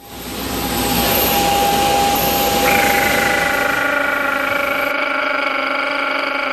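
A loud, steady mechanical drone with several steady whining tones, the higher tones joining about halfway through.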